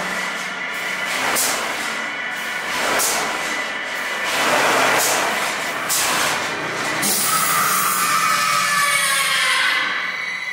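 Haunted-house soundtrack effects: a run of hissing whooshes about once a second, then from about seven seconds in a steady shrill drone.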